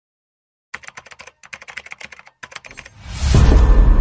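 Rapid clicking like typing on a computer keyboard, starting under a second in with a brief pause past the middle. From about three seconds in, a loud, bass-heavy whoosh swells up over it.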